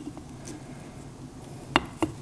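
Faint handling sounds of a small plastic Loctite applicator and a metal piston cap, then one sharp knock near the end as the metal cap is set down on a wooden board.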